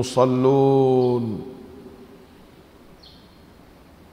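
A man's voice holding the drawn-out last syllable of a chanted greeting for about the first second and a half, then fading into low steady room noise. One faint, short high chirp comes about three seconds in.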